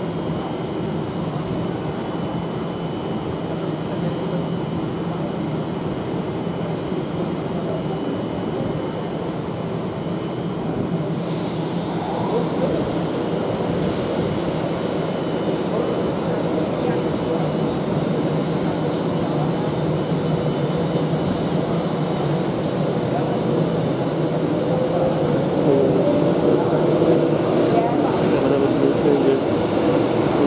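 Class 390 Pendolino electric train pulling out of the station: a steady rumble of wheels and carriages on the rails that grows slowly louder as it gathers speed, with a whine that rises in pitch. Two short hisses come through about eleven and fourteen seconds in.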